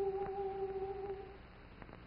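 Background score: a single steady held note that fades away about a second and a half in.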